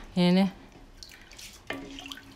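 Water sloshing and dripping as rice is stirred in a large aluminium pot of water with a wooden spoon, after a short spoken syllable near the start.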